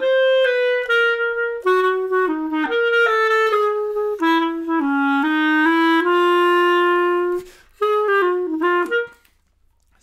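Solo clarinet playing a smooth, gliding jazz-waltz phrase in swung quavers, the quaver subdivision made explicit. A long held note comes about six seconds in, then a short closing phrase that stops about a second before the end.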